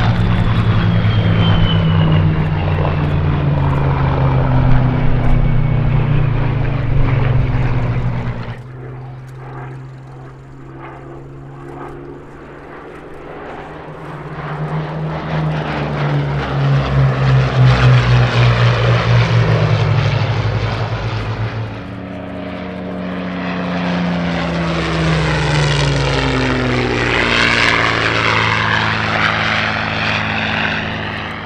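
Rolls-Royce Merlin V12 engines of Spitfire and Hurricane fighters on low flybys, each engine note dropping in pitch as the aircraft passes. The sound breaks off abruptly about eight seconds in and again about 22 seconds in, with a new pass building after each break.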